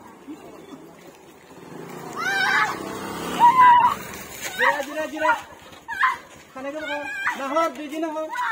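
High-pitched raised voices, in short cries and calls without clear words, several times over the second half.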